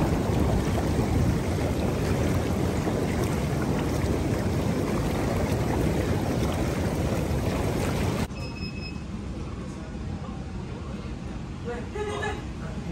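Hot tub jets churning the water: a steady, loud rushing and bubbling that cuts off suddenly about eight seconds in, leaving a much quieter background.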